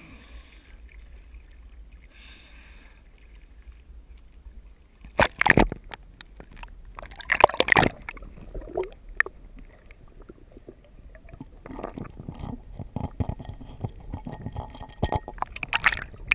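Lake water splashing and sloshing around a waterproof action camera as it goes under the surface, with two loud splashes about five and seven seconds in. Underwater it turns to muffled gurgling and a busy run of small clicks and knocks near the end.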